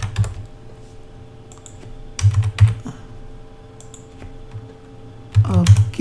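Computer keyboard being typed on in short bursts of keystrokes: a few near the start, a cluster a little past two seconds, and another near the end. A faint steady hum runs underneath.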